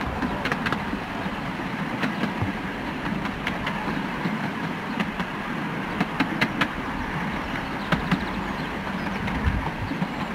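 A 10.25-inch gauge miniature train running along its track, heard from the riding car: a steady rumble of wheels on rail with irregular sharp clicks.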